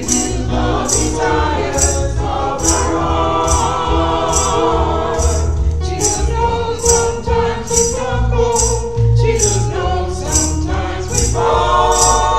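A small gospel choir singing a hymn over a low keyboard accompaniment, with a tambourine jingling on the beat about twice a second.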